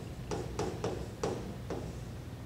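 A pen tapping and stroking on the screen of an interactive touchscreen whiteboard as a word is handwritten: about five short taps with brief scrapes, over a low steady room hum.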